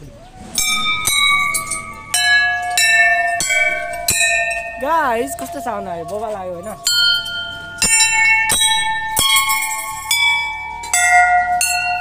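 Brass temple bells hanging in a row, struck one after another by hand, about two strikes a second. Their rings at several different pitches overlap and sustain. The strikes thin out for a couple of seconds in the middle while the ringing carries on.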